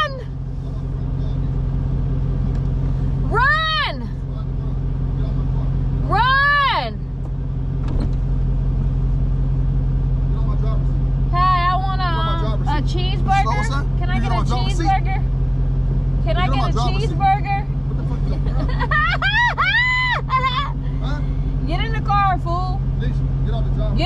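Steady drone of a car's engine and tyres heard inside the moving car's cabin. Over it a woman's voice makes two drawn-out wordless sounds in the first seconds, then more wavering voice sounds from about halfway on.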